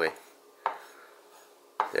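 A chef's knife cutting through cooked glass noodles and knocking once on a wooden cutting board, a single sharp chop about a third of the way in.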